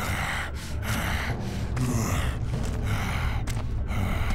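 Heavy, rhythmic breathing of a cartoon monster, a series of hissing breaths repeating about every half to one second, over a steady low rumble.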